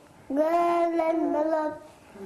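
A young girl singing unaccompanied, holding one long steady note that begins shortly after the start and fades near the end.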